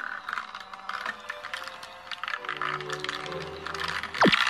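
Background music with held notes, over a fast, continuous clicking rattle of plastic from a small battery-powered toy washing machine running with makeup brushes in its tub.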